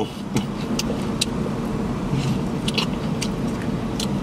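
Steady low hum inside a car cabin, with a handful of short, sharp crunching clicks as crispy fried chicken wings are chewed.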